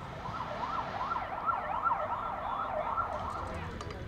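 A siren wailing in a fast up-and-down sweep, several rises and falls in quick succession, starting just after the beginning and stopping shortly before the end, over a low outdoor background rumble.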